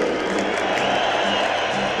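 Music with a steady, repeating bass line over a stadium's loudspeakers, with crowd noise from the stands underneath.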